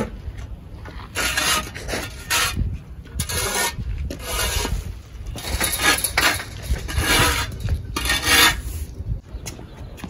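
A shovel scraping dirt across a concrete pool floor and a push broom sweeping, in repeated rough strokes about a second apart.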